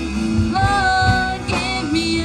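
A woman singing a song live through a microphone, backed by a band on drum kit and electric guitars, holding one long note through the middle.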